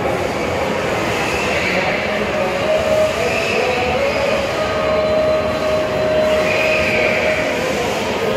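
Steady hubbub of a busy indoor shopping mall, echoing in the large hall, with a faint held tone running through it.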